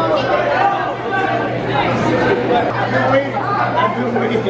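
Crowd chatter in a packed school cafeteria: many students talking at once, overlapping voices with no single speaker standing out, over a steady low hum.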